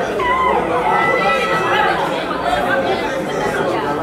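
Crowd of spectators chattering, many voices talking over one another at once, with no single voice clear.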